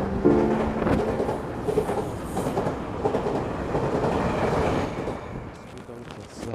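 Metro train noise in an underground station: a steady rumble that dies away near the end.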